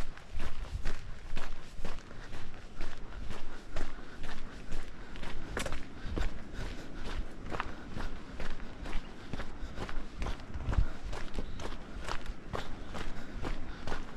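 Footsteps crunching on a gravelly dirt trail, at a steady walking pace.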